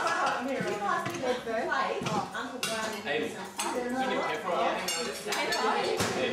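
Cutlery and plates clinking as food is served out with serving utensils, several sharp clinks among ongoing table conversation.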